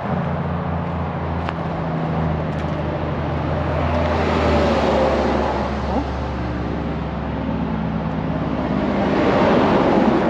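Highway traffic going past on the road beside the truck, swelling twice as vehicles pass, over the steady low hum of an idling diesel engine.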